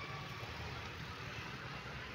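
Steady low rumble with an even hiss of outdoor background noise.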